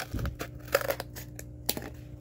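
Scissors cutting through cardboard: a few irregular crunching snips, the sharpest a little before the middle and again near the end.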